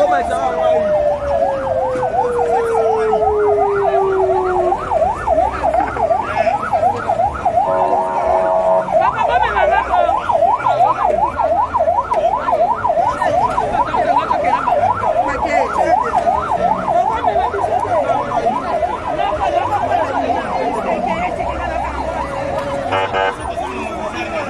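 Vehicle siren on a police escort sounding a rapid yelp, rising and falling about three times a second, with a second siren tone winding down over the first few seconds. A steady blaring tone cuts in briefly about eight seconds in and again near the end.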